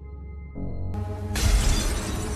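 Movie soundtrack: soft, sustained music, then a sudden loud crash of glass shattering about a second and a half in.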